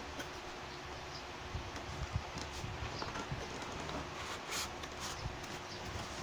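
Cardboard retail box being opened and handled by hand: faint rustling and scraping of the flap and packaging, with a few light taps and clicks.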